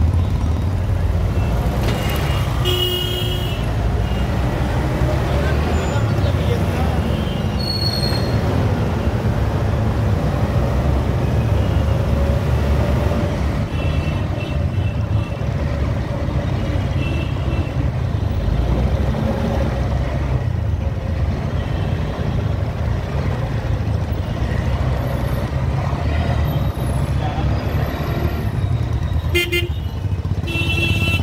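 Steady rumble of close road traffic, scooter and bus engines running, with short vehicle horn toots about three seconds in, several around the middle, and again near the end.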